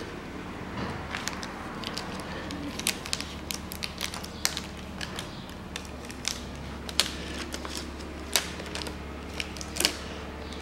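Gloved fingers rubbing and pressing plastic badge letters through their clear transfer film onto a car bonnet: irregular sharp crackles and clicks of the film and letters. Near the end there is a louder crackle as the transfer film is peeled off. A steady low hum runs underneath.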